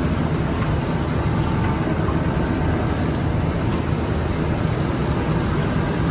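ZXJ-919-A fiber stuffing machine running: a steady, even blower and motor noise, heaviest in the low range, as fiber is blown through its spiral hoses.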